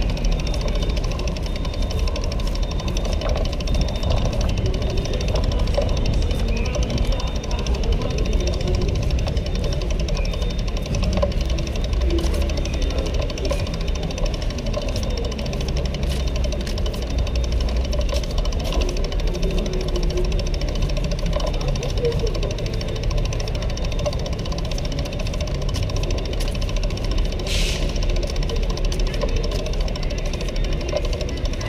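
Busy downtown street ambience: a steady low rumble with indistinct voices of passersby.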